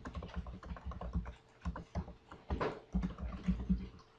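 Typing on a computer keyboard: quick, irregular runs of keystrokes with short pauses between them.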